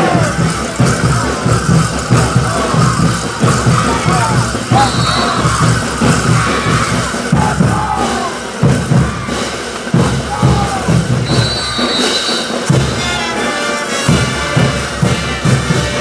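Brass band playing caporales music, a pulsing beat from the bass drum and tubas under the horns, with shouting voices over it.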